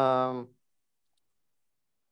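A man's voice drawing out one syllable at a steady pitch for about half a second, then cutting off into dead silence.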